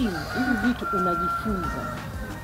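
A rooster crowing, one drawn-out call lasting nearly two seconds, over voices.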